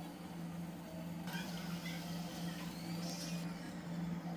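Chicken and potato curry simmering in a pan, over a steady low hum and faint hiss.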